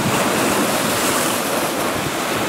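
Baltic Sea waves breaking and splashing against smooth shore rocks, a steady wash of surf.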